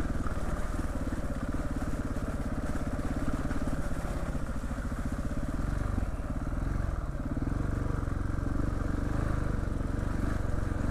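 Off-road trail motorcycle engine running steadily as the bike rides along a muddy track. The engine note eases off and changes briefly about six seconds in, then picks up again.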